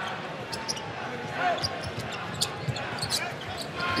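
A basketball being dribbled on a hardwood arena court, with a few short, sharp bounces over the steady murmur of the crowd.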